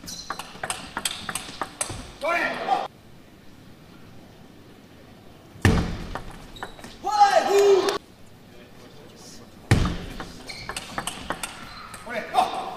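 Table tennis ball clicking rapidly off bats and table in three fast rallies, each a quick run of sharp ticks. A short shout follows the first two rallies, about two and seven seconds in.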